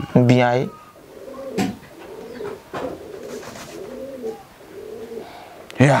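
Pigeons cooing, a soft low coo repeated over and over for several seconds.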